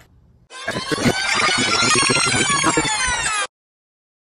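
Animated logo sting sound effect: a dense swell of many pitches that bend up and then back down, starting about half a second in and cutting off suddenly near the end.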